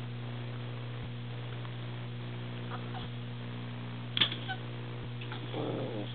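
A small dog gives a short high-pitched whine about four seconds in, over a steady electrical hum.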